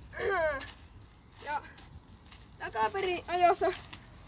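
Speech only: a male voice talking in Finnish in short phrases, with brief pauses between them.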